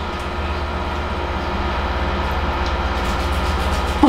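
A steady low mechanical rumble with a fast, even flutter, slowly growing louder.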